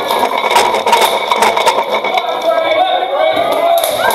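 Several sharp metallic clanks of armour and steel weapons striking in the first half, with loud shouting from the crowd and fighters over them, the shouting strongest in the second half.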